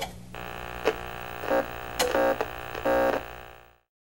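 Electronic sound-effect sting for an animated logo: a sharp hit, then a steady buzzing drone broken by several short glitchy pulses, fading out a little before the end.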